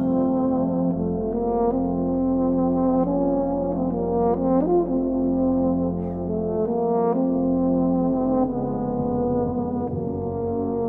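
Brass band playing slow, held chords whose notes shift every second or so.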